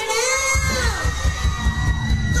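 Live party band music kicking in with a heavy bass beat about half a second in, under a high pitched sound sliding down, while a crowd shouts and cheers.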